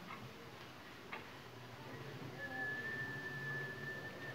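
A single sharp click about a second in, then a steady high whistle held for about two seconds, over a faint low hum.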